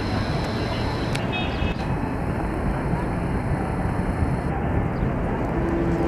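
Steady city-square background noise: a constant hum of traffic mixed with indistinct distant voices.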